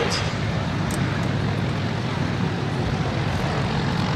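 Piston aero engines running at low taxi power: a steady drone with a fast low throb, from vintage propeller aircraft, a de Havilland DH.51 taxiing close by with a Douglas C-47 beyond.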